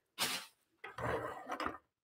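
Newspaper packing paper rustling as it is handled, in two short bursts, the second longer.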